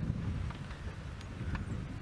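Open game-viewing vehicle driving along a sandy dirt track: a steady low rumble of engine and tyres, with wind buffeting the microphone and a couple of faint ticks.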